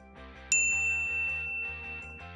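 A single bright ding of a notification-bell sound effect about half a second in, its high tone ringing on and fading slowly, over soft background music.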